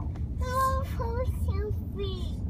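A child's voice drawing out one held vowel, then a few shorter sounds, as if sounding out a word. Underneath is the steady low rumble of a car on the road, heard from inside the cabin.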